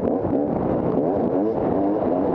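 250 cc enduro dirt bike engine under throttle, its pitch climbing twice as the bike accelerates, with a few light knocks from the bike over the trail.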